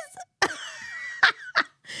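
A woman's breathy laugh: a sudden start about half a second in, a long hissing exhale, and two short bursts near the end.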